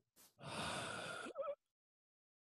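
A man's audible breath close to the microphone, lasting about a second, followed by a short wavering hum of voice.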